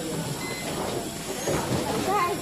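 Steady noisy din of a busy workshop floor, an even hiss-like background with no distinct events.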